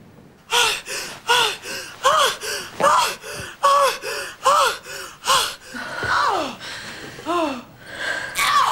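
A woman's cries of pleasure: quick rhythmic gasping cries about two a second, each rising and falling in pitch, then two longer cries that slide down in pitch near the end.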